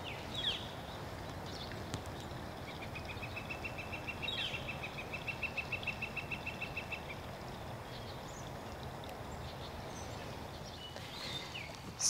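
Birdsong outdoors: one bird gives a dry trill of rapid, evenly spaced notes for about four seconds, starting a few seconds in. A few short falling chirps sound near the start and in the middle, over a faint background hush.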